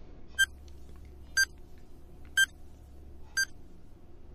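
Countdown-timer sound effect: a short electronic beep once every second, four in all, over a faint steady hum.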